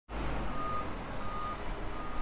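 A vehicle's reversing alarm beeping: two short beeps of one steady high tone, evenly spaced, over a steady low rumble.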